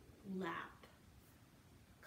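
Mostly speech: a woman calls out the word "lap" once, and the rest is quiet room tone.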